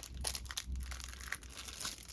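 Faint crinkling of thin clear plastic wrap, with scattered light clicks, as plastic-wrapped coasters and their clear plastic covers are handled.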